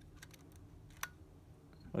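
Faint, light mechanical clicks from handling a Nikon Nikomat FTN 35mm SLR: the film advance lever, which also switches the light meter on and off, being worked. There is a small cluster of ticks, then one sharper click about a second in.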